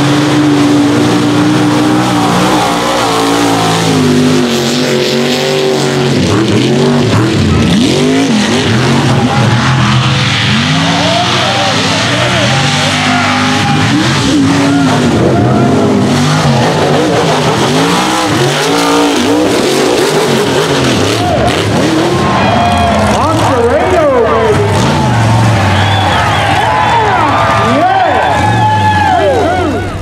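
Mega mud trucks racing at full throttle, the engines loud, their revs surging up and falling back again and again as the tires churn through mud and the trucks go over jumps.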